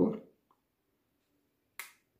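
A single short, sharp click near the end: the Samsung Galaxy A70's network (antenna) cable snapping into its clip on the phone's board.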